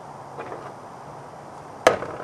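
Knocking on a playground play panel: two light taps about half a second in, then one sharp, loud knock near the end with a brief ring after it.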